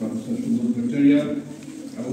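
A voice talking, its words not made out, in a reverberant hall.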